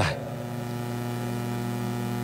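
Steady electrical mains hum, a low buzz with a row of higher overtones, over faint hiss in the microphone and sound-system chain, heard plainly in a pause between speech.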